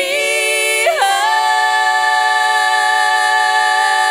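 Female vocal quartet singing a cappella in harmony. The voices glide up into a higher chord about a second in and hold it as one long sustained note.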